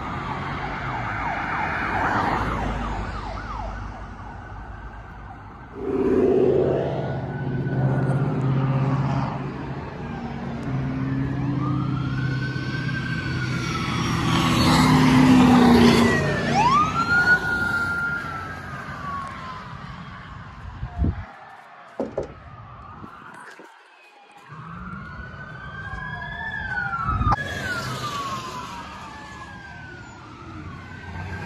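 Police car sirens wail, rising and falling, as police cars speed past one after another. The engine and tyre noise of the passing cars swells and fades, loudest about halfway through.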